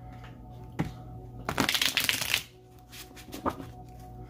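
A deck of fortune cards being shuffled by hand: a dense, rapid run of card flicks lasting under a second about halfway through, with single card taps before and after.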